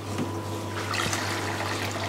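Water siphoning from the aquarium through the just-opened inlet valve into a Fluval FX2 canister filter, a steady trickling rush that grows stronger shortly in as the canister fills.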